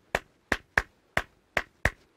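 One person clapping hands in the parapanda celebration clap: six sharp claps in an uneven, repeating rhythm.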